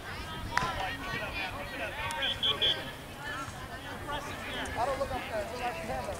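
Voices of players and spectators calling out across an open soccer field. About two seconds in come three short, high whistle toots.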